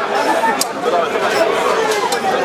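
A close crowd of many voices talking and calling over one another, with a sharp click about a third of the way in.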